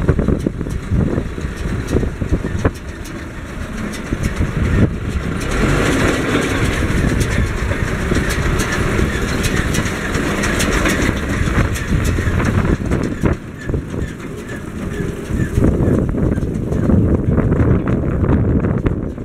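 Wind rumbling and gusting on the microphone outdoors, with clicks of camera handling; it gusts brighter for several seconds in the middle.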